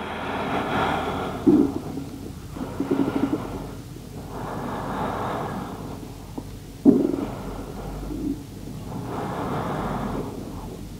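One person breathing slowly and audibly in long, soft swells about four seconds apart, with a few short, sharper sounds between them.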